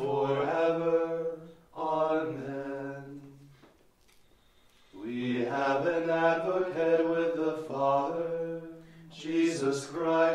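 Liturgical chant: male voices chanting on sustained reciting pitches, in two phrases with a pause of about a second midway.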